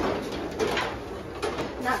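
Metal bar gate of an old freight elevator being lifted by hand, with a series of sharp rattles and clanks.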